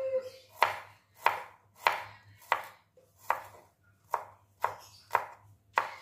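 Kitchen knife slicing garlic cloves on a wooden cutting board: about ten sharp knocks of the blade on the board, roughly one every two-thirds of a second.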